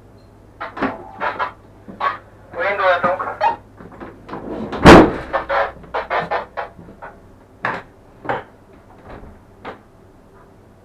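Knocks and clatters inside a standing train's cab, with a short voice about three seconds in and a loud bang near the middle. A low steady hum underneath stops at the bang.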